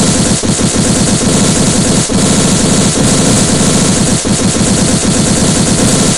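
Cartoon sound effect of a hammer pounding in very fast, unbroken blows, a loud rattle like machine-gun fire, with two brief dips and a sudden stop at the end.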